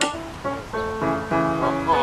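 Background music: a melody of short held notes that change pitch every fraction of a second.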